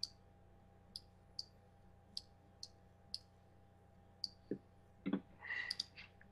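Computer mouse button clicking, about seven short clicks at irregular half-second gaps, then a couple of dull knocks about five seconds in.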